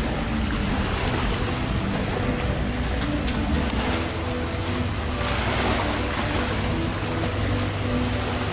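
Steady low rumble of a wooden fishing boat's engine under the wash of wind and choppy sea, with music playing underneath.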